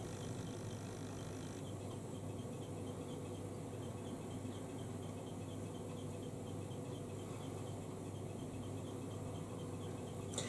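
A steady low hum over faint hiss, with a faint, even ticking high up, about three ticks a second. No distinct brush strokes stand out.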